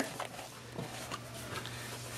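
Quiet handling of a plastic jar: a few faint clicks as its lid is twisted off, over a low steady hum.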